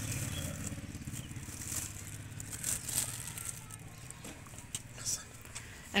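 Soft rustling and snapping of coriander stems being plucked by hand from a planter, with a few faint ticks. A low engine hum runs underneath and fades out over the first two or three seconds.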